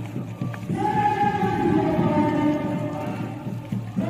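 Singing voices, a song with long held notes, breaking off briefly about half a second in and then carrying on.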